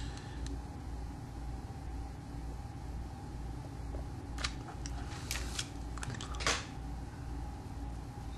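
Quiet, steady low hum with a few faint clicks and one short scrape in the second half: a hot glue gun being handled and its nozzle worked against a fly's head held in a vise while glue is applied.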